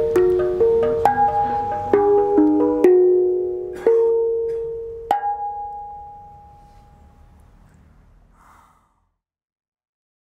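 Handpan played by hand: ringing metallic notes struck one after another, a few a second at first and then more slowly, the last struck about five seconds in and left to ring out until it fades away.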